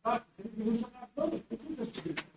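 Faint, indistinct murmured speech in short broken phrases, well below the level of the lecture.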